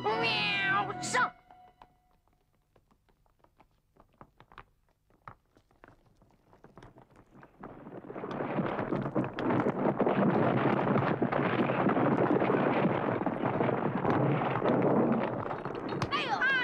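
A cartoon cat character's short, wavering cry, followed after a near-silent stretch of faint scattered clicks by a long, dense rumbling clatter of tumbling rocks, a cartoon rockfall sound effect.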